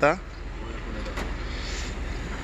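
Steady noise of road traffic and lorries, with a low rumble.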